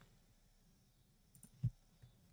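Near silence, broken by a single short click about one and a half seconds in.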